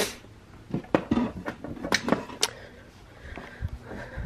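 A short rustle, then a scatter of small sharp clicks and light knocks as the push-button switch of a plug-in wall sconce is pressed and the lamp switches on.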